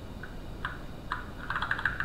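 Computer keyboard being typed on: a few separate keystrokes, then a quick run of keys near the end.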